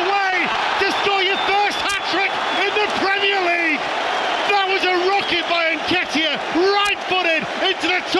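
Speech: a voice talking throughout, over a steady background noise.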